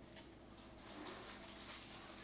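Faint, irregular snips and paper rustle from scissors cutting a small circle out of thick paper.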